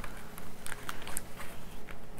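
Plastic food packaging crinkling and crackling as a Lunchables tray is handled and its wrapper pulled off, in a scattering of short, sharp crackles.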